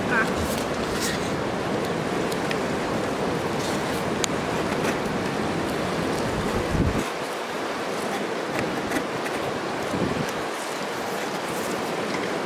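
Steady rushing of a mountain river, with wind buffeting the microphone for the first seven seconds or so. A few faint clicks sound over it.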